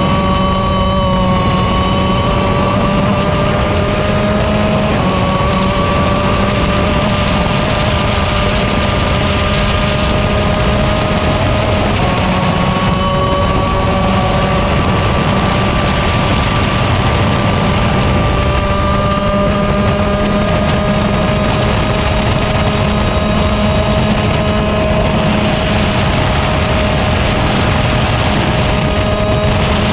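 125cc KZ shifter kart's two-stroke single-cylinder engine running flat out onboard, its pitch climbing slowly. Twice, about five and twelve seconds in, the pitch steps down a little as the driver upshifts, then climbs again.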